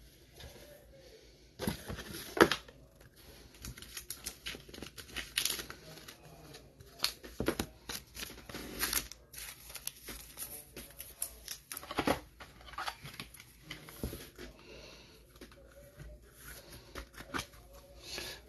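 Plastic card sleeve and clear rigid card holder being handled as a trading card is put away: on-and-off crinkling and rustling with small clicks, the sharpest click about two and a half seconds in.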